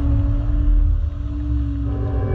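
Excavator engine running with a low, steady rumble under background music, whose last held note fades away.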